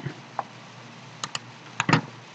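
A few light clicks from a computer keyboard and mouse: a faint one early, a pair about a second and a quarter in, and a louder cluster near the end.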